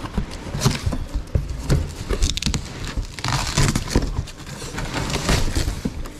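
Cardboard box being opened by hand: the flaps are pulled and folded back, with irregular rustling, crinkling and small knocks as the contents are shifted.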